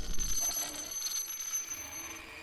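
Cartoon glitch sound effect of a smartphone character being corrupted: a low hit at the start, then a steady high-pitched electronic whine over static hiss.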